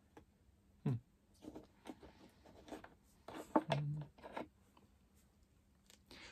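Light rustling and scattered clicks from handling a clear plastic cup of sphagnum moss holding a plant cutting, with two brief voice sounds from a person, about a second in and near the middle.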